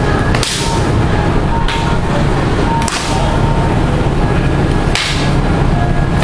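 Sharp strikes of sparring sticks and training daggers hitting each other or the fighters: four cracks at uneven intervals over a steady low room rumble.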